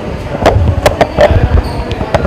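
A handful of dull knocks and thumps, about four in two seconds, over a busy background.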